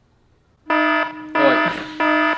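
Game-show style "wrong answer" buzzer sound effect: a harsh, steady buzz that starts suddenly about two-thirds of a second in and sounds twice, with a voice briefly over the second buzz.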